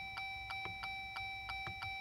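Rapid, even electronic ticking in the Jeep JL's cab, about six ticks a second, over a faint steady high-pitched tone. The ignition is on with the engine off.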